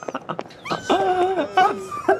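A dog yelping and whimpering as it is kicked, in a string of held and wavering cries.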